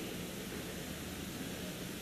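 Steady, even hiss of the recording's background noise, with a faint low rumble beneath it.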